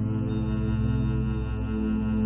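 Slow ambient relaxation music tuned to A = 432 Hz: layered, sustained low drone tones with faint high shimmering notes, a stronger tone swelling in near the end.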